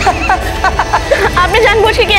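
A person's voice speaking over background music with long held notes.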